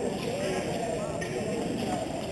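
Indistinct chatter of many people in a large, echoing sports hall, with the light tapping of fencers' footwork on the piste.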